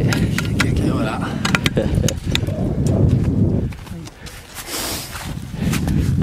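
Wind buffeting the camera microphone: a heavy gusting rumble with sharp crackles, easing off about four seconds in.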